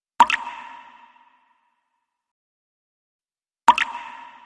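Two drops of water from a dripping tap falling into a sink, about three and a half seconds apart, each a sharp plop with a short ringing tail.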